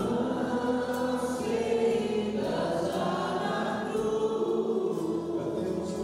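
A choir singing a hymn in chorus, with long held notes.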